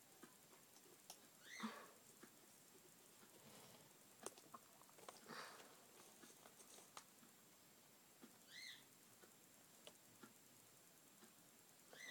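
Near silence: faint scattered ticks and soft rustles of a small paintbrush and fingers handling a plastic model airplane, with two faint brief chirps about two seconds and nine seconds in.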